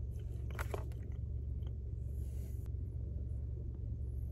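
A person chewing a bite of buttermilk biscuit dipped in gravy, with soft mouth and bite sounds, over a steady low hum.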